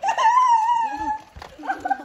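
A child's high-pitched squeal, held for about a second, then shorter high cries near the end.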